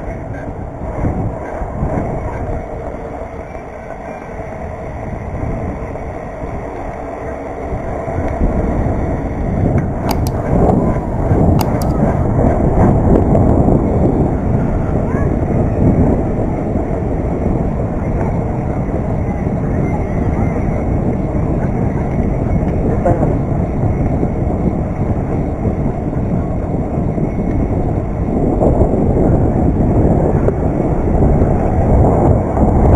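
Wind rushing over the handlebar camera's microphone and tyre rumble from a BMX bike rolling along a paved path. It grows louder about eight seconds in, with a few sharp clicks around ten to twelve seconds in.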